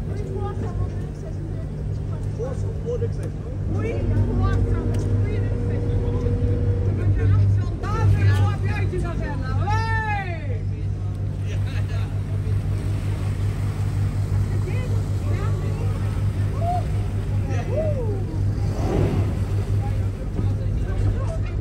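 Boat engine running steadily at low speed, a constant low hum, with voices in the background. The voices include a drawn-out call about halfway through.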